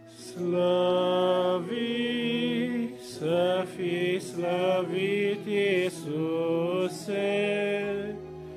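A small group singing a Romanian hymn to an electronic keyboard playing held chords. The voices come in about half a second in and move through long held notes.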